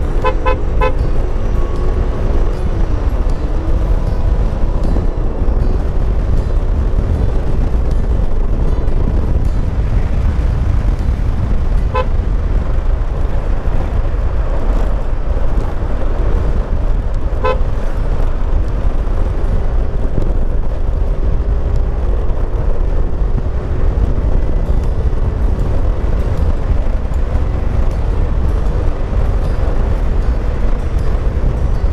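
Yamaha NMAX scooter's single-cylinder engine and belt drive running steadily at road speed under heavy wind noise on the mic. The scooter is running normally again after the flood, its wet CVT belt having only been slipping. Short horn beeps sound: three or four quick ones at the start, then single beeps about 12 and 17 seconds in.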